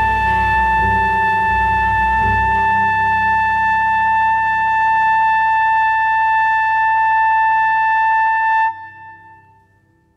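Closing bars of a slow jazz ballad recording: a wind instrument holds one long high note over a soft sustained accompaniment, then stops about nine seconds in and the sound fades away.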